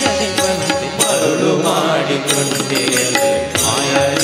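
A man singing a devotional bhajan into a microphone, his voice wavering through melodic ornaments. Instrumental accompaniment with regular percussion strokes runs under the voice.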